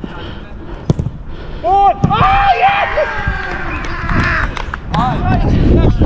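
Footballers shouting over a goal: several voices yelling at once from about two seconds in and again near the end, after a single sharp thud about a second in. A low rumble of wind and movement on the body-worn camera's microphone runs underneath.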